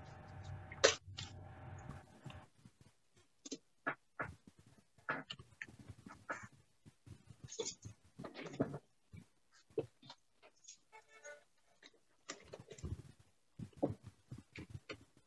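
Faint, intermittent clicks and short scrapes from an erhu being handled and bowed, with a brief pitched note about eleven seconds in.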